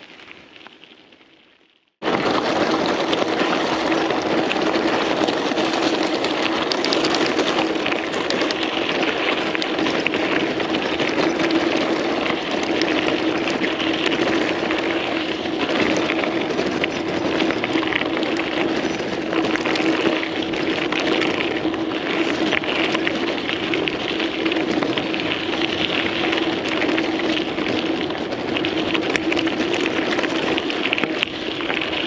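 Mountain bike rolling fast over a loose gravel track, heard from a handlebar camera: a loud, steady rush of tyre crunch and wind noise, full of fine gravel clicks, with a constant hum running through it. It starts abruptly about two seconds in, after a brief fade to near silence.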